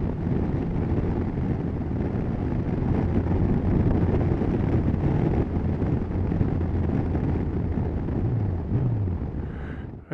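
Motorcycle engine running with wind and road noise at a steady speed. Near the end the engine note drops twice and the sound fades as the bike slows to pull in.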